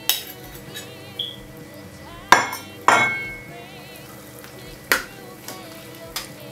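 Kitchen utensils knocking against a stainless steel saucepan while sorrel and grated ginger are stirred into boiling water: four sharp clanks, one at the start, two close together about halfway, one near the end, over a low steady simmer.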